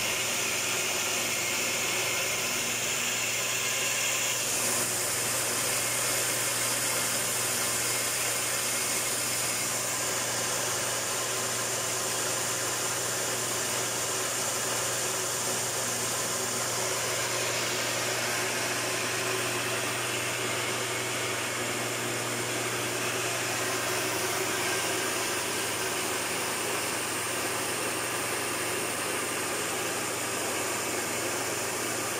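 Electric 3-in-1 rice mill with blower running steadily while milling rice: a constant motor hum under an even rushing noise.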